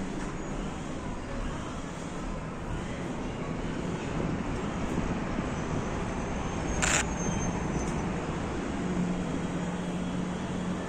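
Distant road traffic heard through an open window, a steady rumble and hiss. A single sharp click comes about seven seconds in, and a low steady hum starts about nine seconds in.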